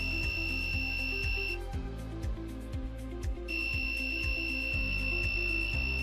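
Piezo buzzer module driven by an Arduino, giving a steady high-pitched overvoltage warning tone: the supply voltage is above the 6 V limit. The tone cuts off about a second and a half in and comes back about two seconds later, over background music with a steady beat.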